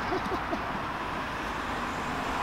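Steady road traffic noise from cars passing on the adjacent road: an even hiss with no distinct events.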